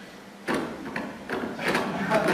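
Laptop keyboard being typed on, a handful of irregular key taps starting about half a second in.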